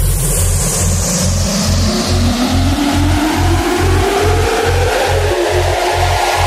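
Vinahouse dance remix in a build-up: a pulsing bass at about two beats a second under a long rising sweep.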